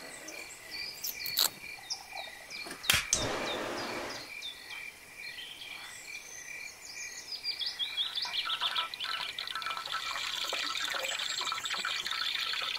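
Highland forest ambience: an insect chirping in an even pulse about twice a second, with birds calling over it. A sudden rush of noise comes about three seconds in, and from about eight seconds a dense chorus of frogs and insects builds.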